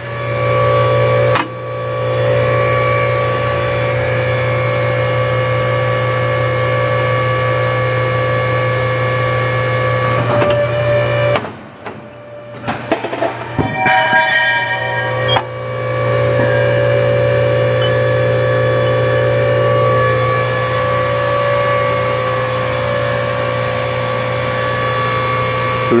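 Edwards 90-ton hydraulic ironworker running: its electric motor and hydraulic pump give a loud, steady hum with several held tones. From about 11 seconds in, the hum drops and its tones shift for about four seconds while the machine shears a piece of 3 by 3 by half inch steel angle, then the steady hum returns.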